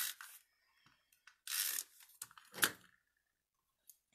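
Paper being handled on a craft mat: two short rustles of paper about a second and a half apart, and a sharp tap a little past halfway.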